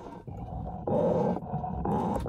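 Monofilament fishing line dragged back and forth over the edge of a rusty steel plate underwater, heard as a muffled, rough grinding rumble that grows louder about a second in.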